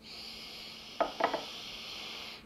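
A long, steady slurp of tea drawn in through the lips to aerate it, with two quick clinks of glass and porcelain teaware about a second in.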